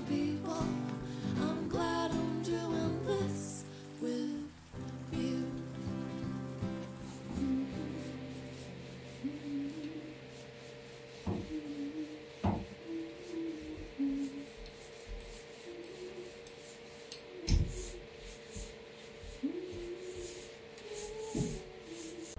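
A sung intro song with acoustic guitar ends about four seconds in. Then a paint roller rubs back and forth as it spreads paint across a bare metal bus floor, over a steady faint hum.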